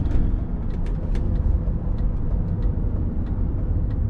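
Interior noise of a 2003 BMW E39 M5 on the move: the S62 V8 running at steady revs under a low road and tyre rumble, with a few faint clicks.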